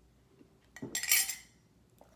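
A metal drinking mug and metal spoon clinking together about a second in: one short clatter with a faint ring that dies away within half a second.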